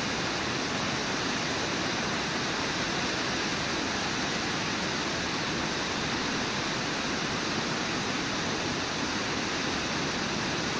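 Waterfall and whitewater rapids rushing steadily, an even, unbroken rush of water.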